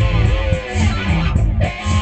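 Funk track with electric guitar playing over bass and a steady beat.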